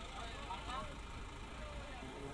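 Faint outdoor ambience of scattered distant voices over a low steady hum.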